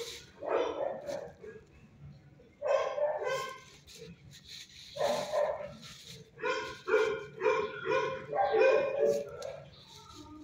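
Dogs barking in a shelter kennel: short repeated barks, spaced out at first and coming in quick succession in the second half.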